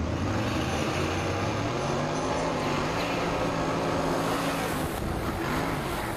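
Dirt-track Sportsman race car's engine running hard on the track, picked up by a camera mounted on the car. The engine note holds fairly steady over a constant rush of noise, dipping and climbing again briefly near the end.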